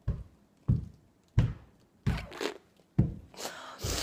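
A woman's short, forceful breaths puffed out through pursed lips, close to a phone microphone so each lands as a thump, about six in a row roughly every two-thirds of a second, from disgust at handling raw chicken giblets.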